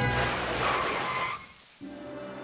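Cartoon soundtrack: a rushing whoosh of noise swelling over the score, cutting off about a second and a half in, after which soft sustained music comes back in.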